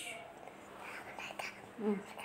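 Quiet, soft whispered speech, with a few faint small clicks and a short soft vocal sound near the end.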